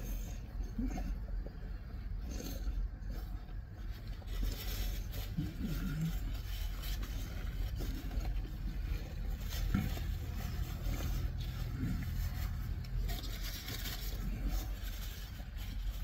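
Steady low hum of a car cabin, with faint rustling of a paper napkin and soft chewing as two people eat sandwiches.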